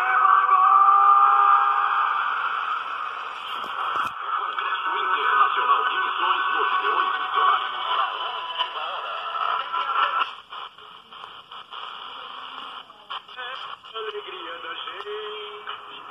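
Shortwave broadcast of Rádio Voz Missionária on 5940 kHz (49 m band) coming through the speaker of a small Motobras Dunga VII portable radio: muffled programme audio with a voice. About ten seconds in the signal fades sharply, turning weaker and broken up.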